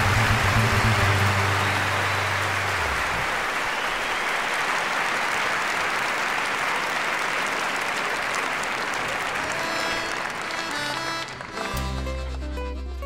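Large audience applauding, carrying on after the band's held final chord cuts off about three seconds in. Near the end the band starts the next piece, with bass and other instruments coming in under the clapping.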